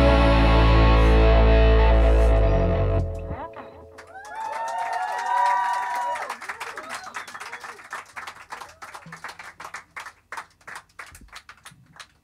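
A live rock band with distorted electric guitar and drums ends a song on a loud sustained chord that cuts off about three seconds in. The small audience then cheers and whoops, followed by scattered clapping that thins out toward the end.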